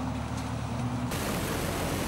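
Corn picker running in the field: a steady engine hum that, about a second in, changes suddenly to a steady rushing noise of the picking machinery.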